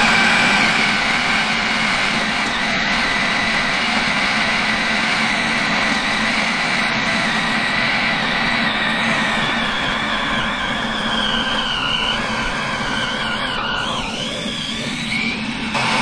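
Philips food processor motor running steadily, its blade grinding medjool dates into hazelnut butter as they are dropped in through the feed tube. In the second half its high whine wavers in pitch as the sticky dates work the motor.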